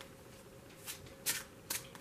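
A deck of tarot cards being shuffled by hand: about three short, soft card rustles in the second half, the clearest just past the middle.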